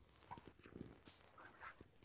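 Near silence: room tone with a few faint, scattered small noises.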